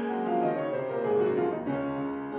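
Piano accompaniment of an opera playing alone in a short gap between sung phrases, several sustained notes sounding together.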